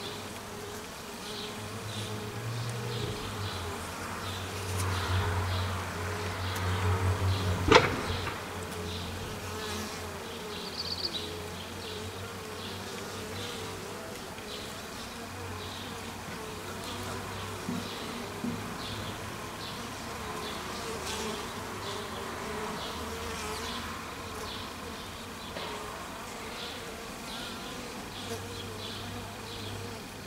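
A crowded cluster of honeybees buzzing steadily at close range, the hum swelling for a few seconds in the first third. A single sharp knock sounds about eight seconds in, the loudest moment.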